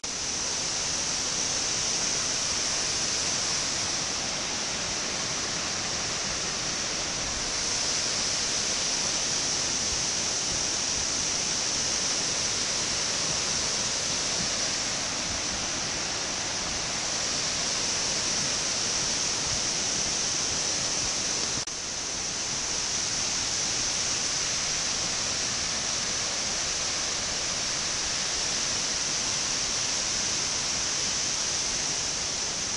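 Steady rushing of a large waterfall, white water cascading down over travertine terraces.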